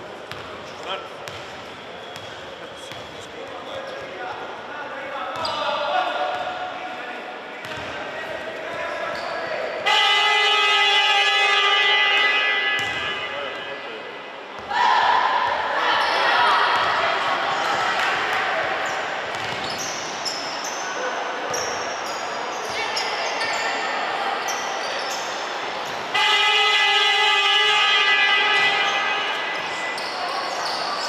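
Basketball game horn at the scorer's table, sounding two steady buzzing blasts of about three seconds each, about ten seconds in and again near the end, marking the end of a timeout. Basketballs bounce on the court floor and voices carry in the echoing sports hall.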